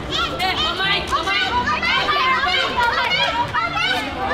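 A group of young people's voices talking and calling out at once, high-pitched, excited and overlapping, with no one voice standing clear.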